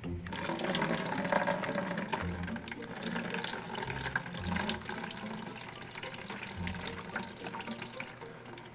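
Water pouring steadily from a pinched-shut plastic fish shipping bag into a plastic bucket, as the bag is drained and the fish is kept inside.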